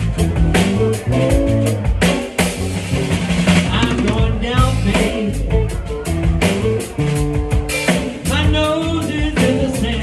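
Live blues band playing an instrumental passage: electric guitars over drum kit and bass, with lead-guitar phrases of bent, wavering notes about halfway through and again near the end.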